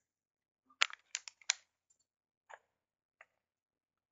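Computer keyboard keystrokes: a quick burst of four or five sharp taps about a second in, then two single taps.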